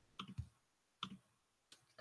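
Four faint, short clicks, irregularly spaced, from a laptop being worked by hand.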